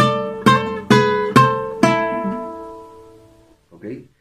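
Requinto guitar with nylon strings picked in a short ornament phrase for a pasillo: five plucked strokes about half a second apart, the last left to ring out and fade over about a second and a half.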